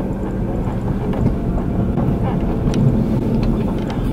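Car engine running, heard from inside the cabin: a steady low rumble.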